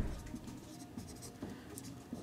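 Faint strokes of a dry-erase marker scratching across a whiteboard.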